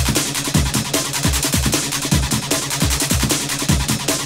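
Early-1990s techno track playing: a fast, steady four-on-the-floor kick drum, about three beats a second, under rapid hi-hats and held synth tones.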